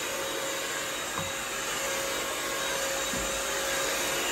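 Bissell CrossWave multi-surface wet-dry vacuum running in hard-floor mode as it is pushed across the floor: an even whir with a steady whining tone in it.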